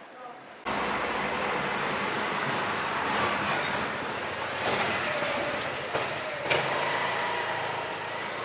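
Street ambience: steady traffic noise with indistinct voices and a few high chirps, starting abruptly about a second in.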